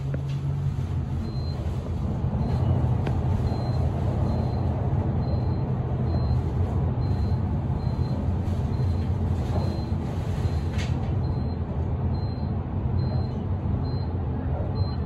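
A Kone traction elevator car travelling up at speed, heard from inside the car: a steady low rumble of the ride, with a short high Kone floor-passing beep at each floor it passes, about every two-thirds of a second.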